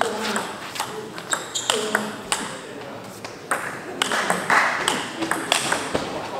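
Table tennis ball clicking off the paddles and the table in a rally, several sharp clicks a second at an uneven beat.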